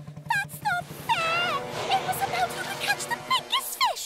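Minke whale calf's high squeaky whistles and squeals, many short calls rising and falling in pitch, over background music. A boat's engine chugs low beneath them and stops shortly before the end.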